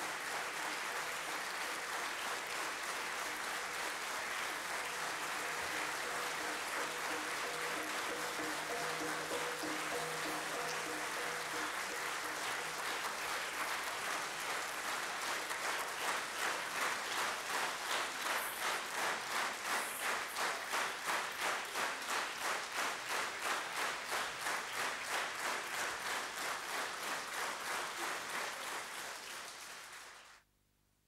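A theatre audience applauding. The applause is scattered at first, with faint held musical tones under it, then about halfway through it turns into rhythmic clapping in unison at about two and a half claps a second, fading toward the end.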